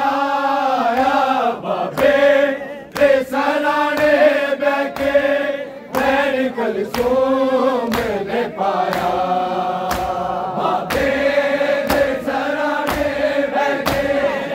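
A group of men chanting a noha (Shia lament) together, a mourning chant. Sharp slaps of hands on bare chests (matam) keep the beat, about one a second.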